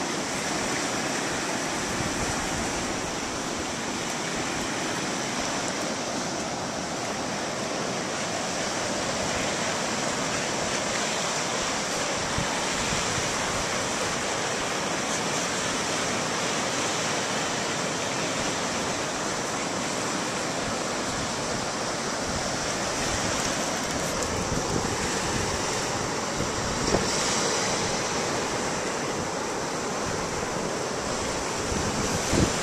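Steady ocean surf with wind buffeting the microphone, and a single short knock near the end.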